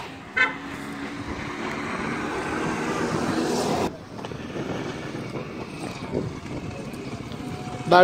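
Road traffic on a busy street. A passing vehicle's engine grows steadily louder over the first four seconds, then cuts off suddenly, leaving quieter traffic noise.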